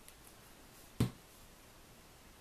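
A plastic glue bottle set down on a craft mat: one sharp knock about halfway through, with a few faint paper ticks before it.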